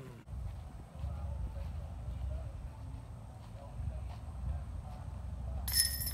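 Wind rumbling on the microphone with faint distant voices. Near the end, a sudden metallic jingle: a putted disc striking the hanging chains of a disc golf basket.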